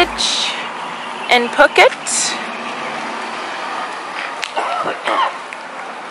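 Street ambience: a steady hum of traffic with brief snatches of indistinct voices, and a short hiss about two seconds in.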